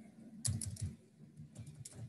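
Computer keyboard typing: two short runs of quick keystrokes, about half a second in and again about a second and a half in.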